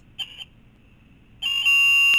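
Yaskawa Sigma-7 servo motor giving a high-pitched whine: a short chirp about a fifth of a second in, then a loud steady tone from about one and a half seconds in. It is the servo vibrating because its tuning level (gain) has been pushed too high.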